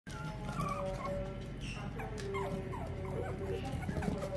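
Young puppies playing and whimpering, giving many short whining cries that fall in pitch, with music in the background.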